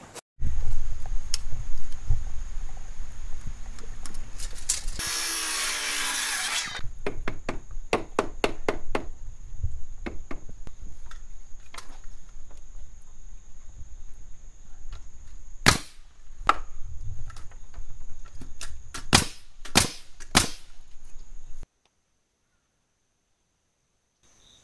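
Pneumatic framing nailer driving ring-shank nails into pressure-treated joist blocking: a quick run of sharp shots, then a few single shots spaced apart. About five seconds in, a loud rushing hiss lasts roughly two seconds. A thin, steady, high insect trill runs underneath.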